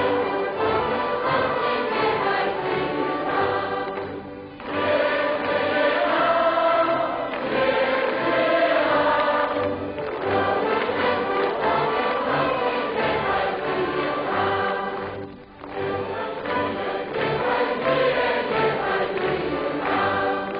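Choir singing in long held phrases, with short breaks about four seconds in and again about fifteen seconds in.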